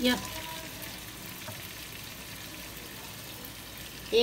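Chicken pieces and whole spices frying in oil in a nonstick pot, with fresh chopped tomato just added: a steady, soft sizzle.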